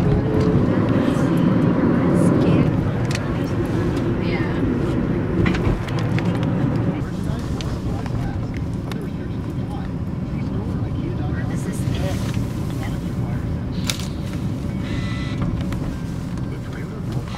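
Road and engine noise inside a moving car's cabin, a steady low rumble, with a few scattered short knocks.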